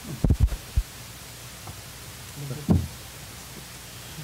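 A few dull low thumps in the first second, then a steady low hum, with a short murmured voice about two and a half seconds in.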